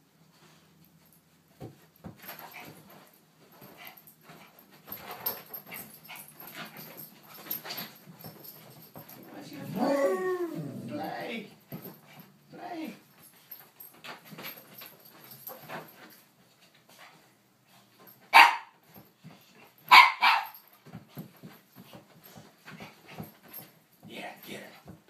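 Two dogs, one small and one large, playing together: a wavering, pitch-sliding vocal sound about ten seconds in, then two loud barks about two seconds apart near the end, with faint scuffling between.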